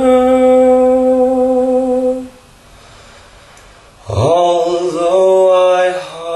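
A man singing a show tune unaccompanied, holding a long steady note for about two seconds. A pause of nearly two seconds follows, then he comes back in with a scoop up into the next held note.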